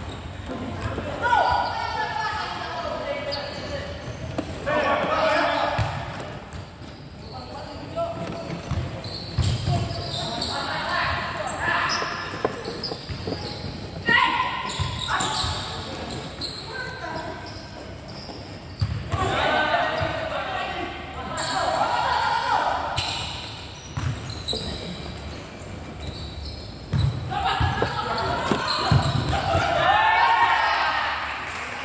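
Futsal players shouting and calling to each other in bursts, with sharp thuds of the ball being kicked and bouncing on the hard court, in a large covered hall.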